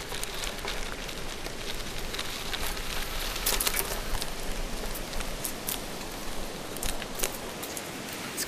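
Bicycle tyres rolling over a gravel path: a steady crunching hiss with scattered sharp clicks and rattles, thickest about halfway through.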